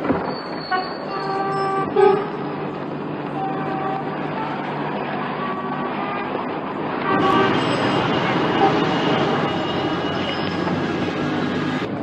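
Busy street traffic ambience with several short car-horn toots in the first few seconds and a murmur of voices; the background noise thickens about seven seconds in.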